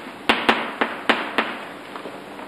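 Chalk writing on a blackboard: about five sharp taps, roughly three a second, in the first second and a half.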